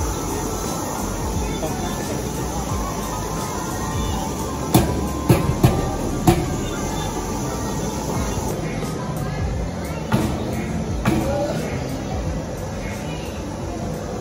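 Background music and steady crowd noise in an indoor play hall. A quick run of four sharp pops comes a little under five seconds in, and a couple of fainter knocks follow later.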